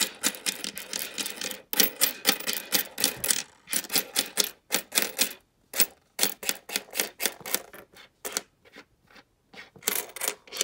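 Canadian nickels clicking and clinking against each other and the tabletop as a roll is spread out and flipped through by hand. The sharp clicks come in a rapid, irregular run that thins out near the end.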